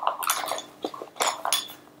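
Small plastic makeup containers clicking and clattering against each other as they are handled and rummaged through in a makeup bag, several short knocks in a row.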